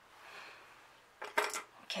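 Makeup brushes and palette clattering briefly on a tabletop, a short burst of clicks a little past halfway through and another click near the end, after a faint soft brushing hiss at the start.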